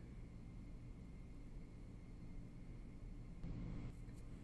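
Quiet room tone with a faint, steady low hum and no distinct sound.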